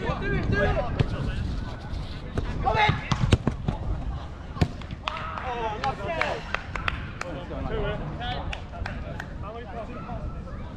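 Players' indistinct shouts and calls during a five-a-side football game, with several sharp thuds of the ball being kicked in the middle of the stretch, the loudest about three seconds in.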